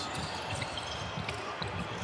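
Basketball arena ambience on a game broadcast: a steady background hiss of crowd noise with faint low thuds of play on the court.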